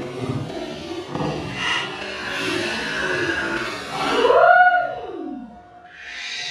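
A cat scrambling out of a dumpster over plastic garbage bags, a rustling commotion, then about four seconds in a loud cry that rises and then slides down in pitch over about a second.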